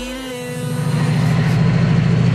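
Diesel locomotive engine running with a heavy, steady throb that grows louder about half a second in, as the last of the music dies away.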